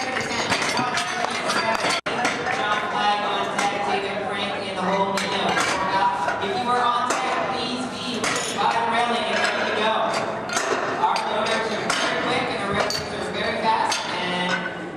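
Metal clinks and clanks of iron barbell plates and collars being changed on a deadlift bar, over a steady hubbub of voices in a large hall. The sound cuts out for an instant about two seconds in.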